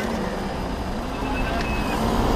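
Small 50cc youth motocross motorcycles idling steadily, with the riders waiting on their bikes.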